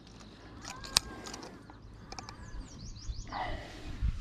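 Birds chirping in short falling calls, with a single sharp click about a second in.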